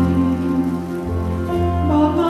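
A slow, soft song played live by a small church band of saxophones, piano and drums. Sustained chords over a low bass line, with a light cymbal wash, shift to new notes about one and a half seconds in.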